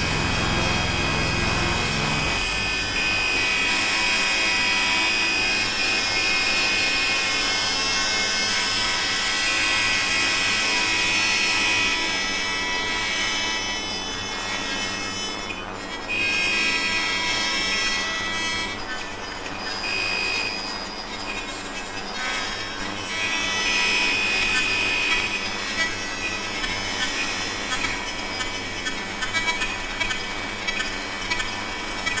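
Experimental electronic music from an EMS Synthi VCS3 analogue synthesizer and computer: layered, held high-pitched tones and hiss. The low end drops away about two seconds in. The texture switches abruptly in blocks, thinning out twice midway, and scattered crackling clicks come in near the end.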